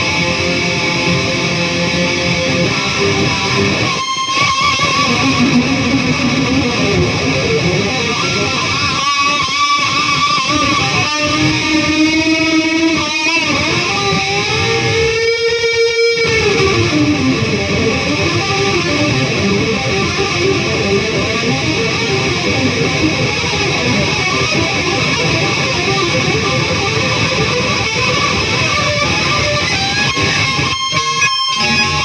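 Amplified electric guitar, an Oscar Schmidt by Washburn Les Paul-style gold top, played continuously in riffs and lead lines with string bends. About halfway through there is a long held, wavering bent note, and there are a few brief breaks in the playing.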